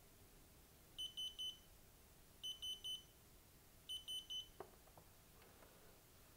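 Digital torque wrench beeping in three quick bursts of about four short, high beeps each, roughly a second and a half apart: its alert on a CPU socket screw. A few light clicks of the tool follow.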